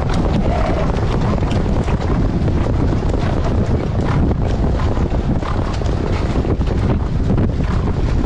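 Heavy, steady wind buffeting on a harness driver's helmet-camera microphone while the sulky travels at racing speed behind the horse on a dirt track.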